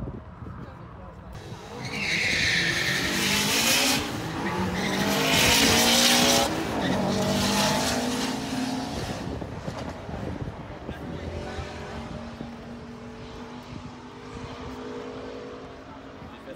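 Street-legal drag cars running hard down the strip, with tyre squeal and engine noise. It is loudest in two stretches in the first seven seconds, while the engine pitch climbs in steps through the gears. It then fades with distance, leaving a lower, steadier engine note near the end.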